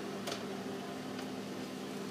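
A steady low hum, with one faint click about a quarter second in.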